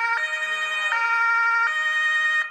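German two-tone emergency-vehicle siren (Martinshorn), loud, switching back and forth between a lower and a higher tone about every three quarters of a second.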